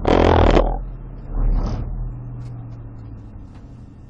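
Patrol car's tyres running onto the highway shoulder: two loud rumbling bursts, the first at the start and the second about a second later. Then steady road noise that slowly fades.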